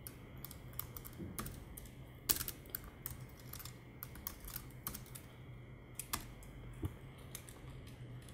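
Computer keyboard keys tapped in irregular, scattered clicks as code is typed, fairly faint, over a steady low hum.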